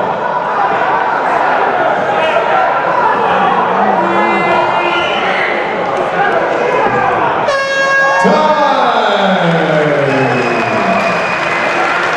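Crowd shouting and cheering around the fight cage. About seven and a half seconds in, a short horn blast sounds the end of the final round, and the crowd voices carry on after it.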